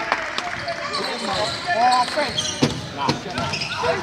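Indoor basketball game: the ball knocking on the hardwood court several times amid scattered shouts from players and onlookers, with a cry of "oh" at the very end.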